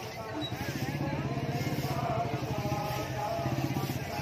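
A motor vehicle engine running with a fast, even low throb, under the chatter of a street crowd.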